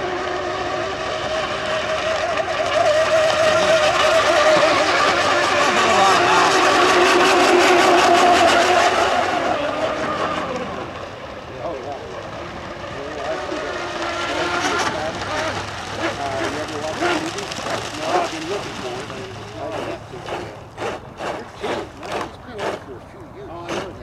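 Radio-controlled 1/10-scale modern hydroplane racing boats running at speed: a wavering motor whine with spray hiss that swells over the first few seconds and fades away about ten seconds in. Near the end comes a run of short, regular knocks, a little over two a second.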